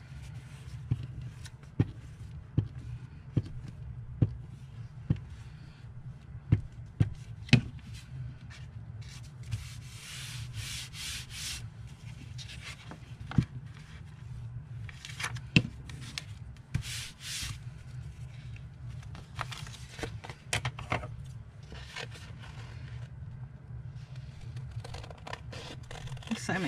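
A glue stick rubbed across paper and sheets of old book paper handled and smoothed down, with a run of sharp taps in the first several seconds and longer rubbing strokes after about ten seconds.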